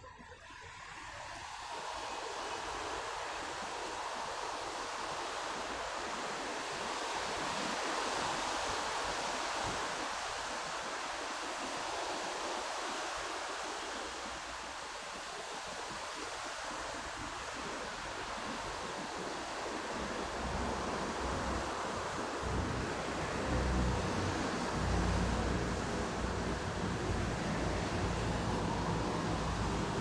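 Heavy rain falling steadily, a dense hiss that swells in over the first couple of seconds; a low rumble joins in the last third.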